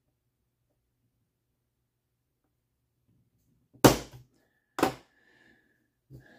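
Two sharp plastic clicks about a second apart, past the middle of an otherwise quiet stretch, as small moulded plastic pills are cut from their parts tree.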